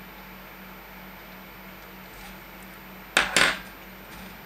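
Two quick clinks of a small hard tool knocking against the work surface about three seconds in, over a faint steady hum.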